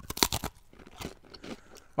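A taralli biscuit being bitten into: a quick cluster of sharp crunches in the first half-second, then a few softer crunches of chewing.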